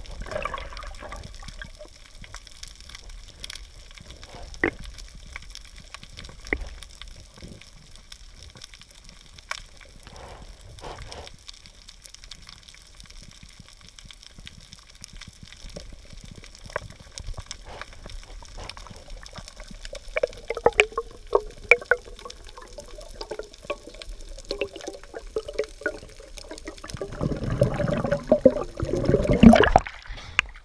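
Underwater sound inside a camera housing: scattered faint clicks and crackles over a low hiss. About two-thirds of the way in, a wavering bubbling starts and grows louder, and it ends in a loud wash of water as the camera breaks the surface.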